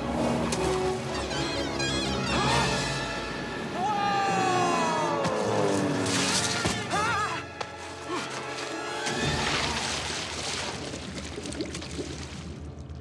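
Film soundtrack: orchestral score with sound effects mixed in, including a long falling glide in pitch about four seconds in and a dip in the music a little past the middle.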